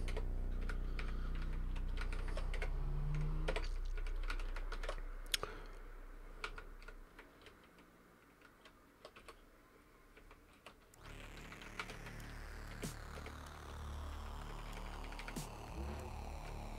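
Scattered computer keyboard keystrokes and clicks, a few at a time with pauses between, over a low background hum.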